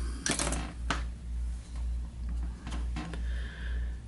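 A few light clicks and small handling noises from fly-tying work at the vise, over a steady low hum.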